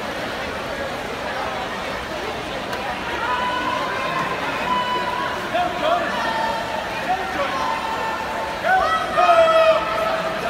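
Spectators at a swim race yelling and cheering the swimmers on, several long held shouts over a steady crowd noise. The shouting grows louder near the end.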